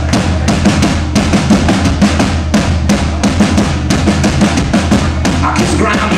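Live rock band playing a song's opening, led by a drum kit with a fast, even beat over a steady low bass line.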